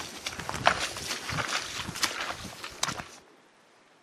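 Boots walking through wet, grassy bog: a run of irregular steps rustling through dry grass. They stop abruptly about three seconds in, leaving only faint background noise.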